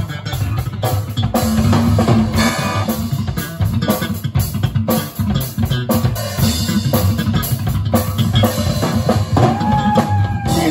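Rock band playing live: a drum kit pounding a steady beat under electric guitar and bass guitar. A held high note comes in near the end.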